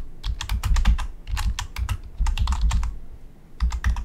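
Typing on a computer keyboard: quick runs of keystrokes with short pauses between them, entering shell commands.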